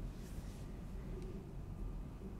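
Faint steady low background noise (room tone), with a brief soft hiss just after the start and a faint click about a second in.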